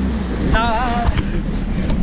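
Jet ski engine hum dropping away at the very start, leaving an irregular low rumble; a short vocal exclamation sounds about half a second in.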